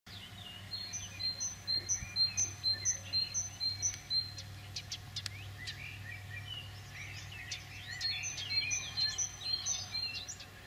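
Songbird chirping: a high two-note call repeated about two or three times a second in two bouts, one early and one near the end, with softer warbling between. A steady low hum runs underneath.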